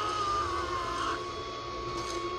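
The anime episode's soundtrack, playing through the reaction video: one long high tone that wavers at first, then is held steady throughout.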